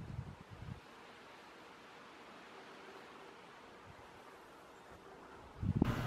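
Faint wind outdoors: low rumbles of wind on the microphone in the first second, then a soft, steady hiss.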